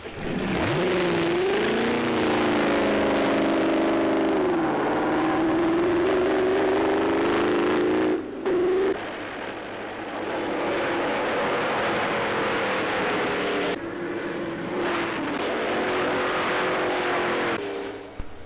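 A racing car engine revs up hard at the start, then runs at a high, mostly steady pitch with a few dips. The sound breaks off abruptly twice, where the film is spliced between shots, and fades just before the end.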